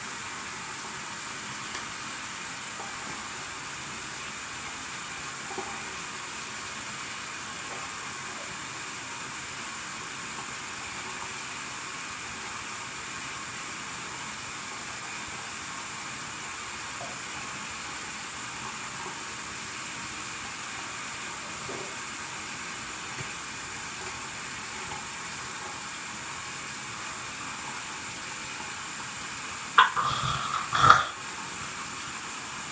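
Steady hiss with a faint high whine and a few faint ticks. Right at the end, louder toothbrush scrubbing starts.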